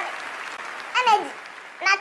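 An audience applauding, the clapping slowly dying away, with two short vocal calls falling in pitch, about a second in and near the end.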